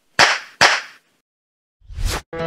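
Two sharp snapping hits less than half a second apart, each dying away quickly: edited-in transition sound effects. Dead silence follows, then a short swish near the end as the edit moves on.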